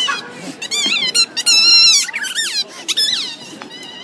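A run of high-pitched squeaks and chirps, rising and falling in pitch, starting about half a second in and stopping about three seconds in, with a longer wavering squeal in the middle.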